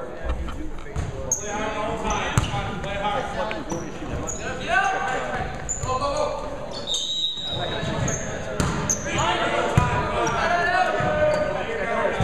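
Indistinct voices of players and spectators echoing in a gymnasium, over the impacts of a volleyball being hit and bouncing during play, with a short high tone like a referee's whistle about seven seconds in.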